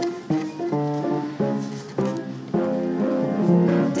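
Swing-jazz recording in a short instrumental passage between sung phrases: a rhythm section plays crisp, separately struck chords over bass notes.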